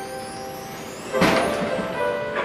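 Opening of a show choir number: a held chord from the choir and its band, with a sudden bright accent about a second in.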